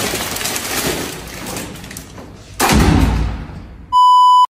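Rustling of a paper-wrapped bouquet being handled, then a heavy door slammed shut about two and a half seconds in, the bang dying away over about a second. A steady test-tone beep starts at the very end.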